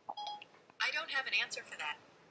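Short electronic chime from an iPhone as Siri is activated to listen, followed by faint speech.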